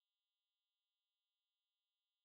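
Near silence: the sound track is dead, with nothing audible.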